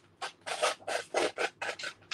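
Small scissors snipping through a sheet of vellum: a quick run of about nine short cuts, four or five a second.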